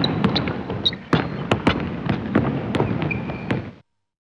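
Sound effects under an animated logo intro: a dense, noisy rush studded with many sharp cracks and knocks, cutting off suddenly shortly before the end.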